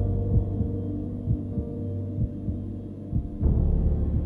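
Heartbeat sound effect: short low thumps, some in lub-dub pairs, over a low humming synth drone that swells in at the start and again near the end.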